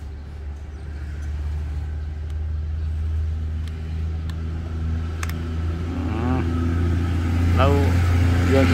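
Steady low drone of an engine running, growing louder toward the end, with a few faint light clicks.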